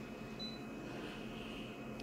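A multifunction copier's touch panel gives one short, high beep about half a second in as an on-screen key is pressed, over a steady low background hum.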